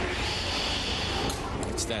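Broadcast graphic-transition whoosh: a hissing sweep of noise lasting about a second, followed by a few short clicks before the commentary resumes.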